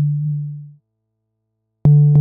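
A low, sine-like synthesizer note from a Reaktor Blocks patch, the NHT oscillator sequenced through a filter, fades out under a second in. After a short silence, a new note starts with a click near the end.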